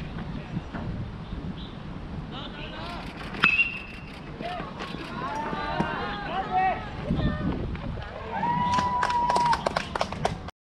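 A metal baseball bat hits the ball about three and a half seconds in: a sharp crack with a short ringing ping. Voices then call out, with one long held shout near the end.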